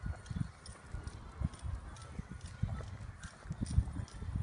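Footsteps of a person and a small dog walking on a paved sidewalk: irregular dull thuds, several a second, with light ticks over them.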